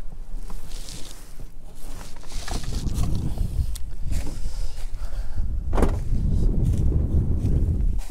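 Footsteps through dry, matted grass, with wind rumbling on the microphone, growing stronger a few seconds in.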